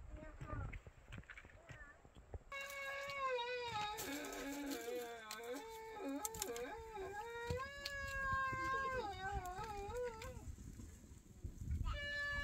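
A high-pitched voice, drawn-out and wavering, starting a few seconds in and lasting about eight seconds.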